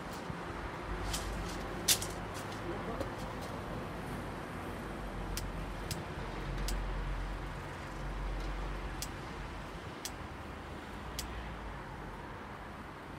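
Steady outdoor background of wind and distant traffic, with a low rumble swelling in the middle. Over it come a handful of sharp clicks and knocks from beekeeping gear being handled, among them a metal bee smoker being set on the hive lid. The loudest knock comes about two seconds in.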